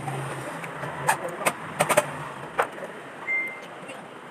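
A motor vehicle's engine running with a low steady hum, with several sharp clicks and knocks and a short high beep about three seconds in.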